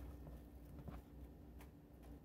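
Near silence: room tone with a steady low hum, and two faint taps, one about a second in and one near the end.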